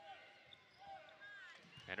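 Faint gym sound of a basketball game in play: scattered voices from the court and bench, short sneaker squeaks on the hardwood floor and a ball bounce.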